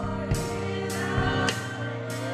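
A woman leading gospel praise singing into a microphone, over sustained musical chords, with a few sharp percussive hits.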